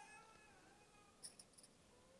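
Near silence, with a faint, high, wavering crying voice fading out in the first second and a few faint clicks near the middle.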